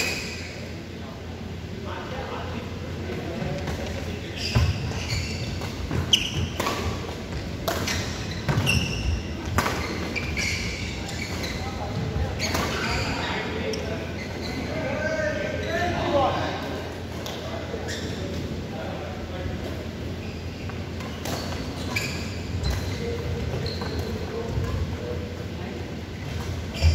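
Badminton rally: racket strings striking a shuttlecock with sharp cracks at irregular intervals, echoing in a large hall, with voices around the court.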